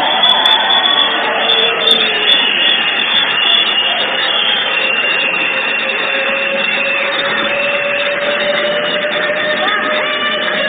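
A film trailer's soundtrack playing loudly during a phone demo: a dense, continuous wash of dramatic music and battle effects with a few long held tones.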